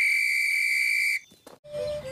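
A whistle blown in one long, steady high note that cuts off after a little over a second.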